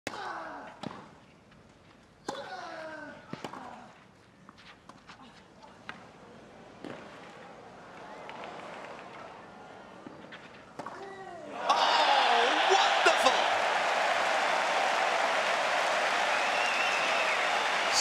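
Tennis ball struck back and forth in a rally, sharp pops about a second or more apart, with a player's grunts on the early shots. About twelve seconds in, a large stadium crowd suddenly breaks into loud, sustained shouting and cheering, which carries on as the rally continues.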